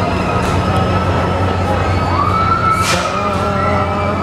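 Fairground noise around a swing tower ride: a steady low machine hum under a sustained high tone that rises in pitch about two seconds in and then holds, with a short hiss about three seconds in.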